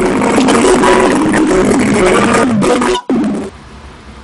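A voice singing over a strummed acoustic guitar, loud and noisy, cut off abruptly about three seconds in and followed by much quieter sound.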